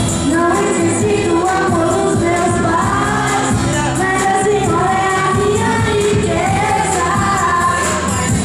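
Live music: a sung vocal melody, with long gliding notes, over a backing track played through a club PA, loud and continuous.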